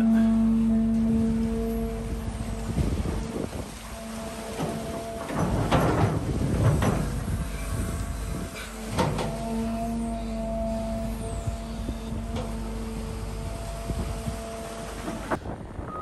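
Cat 320 hydraulic excavator running with a steady hum from its engine and hydraulics while its arm works at full reach deep in the trench. The bucket scrapes and knocks in the clay several times through the middle of the clip.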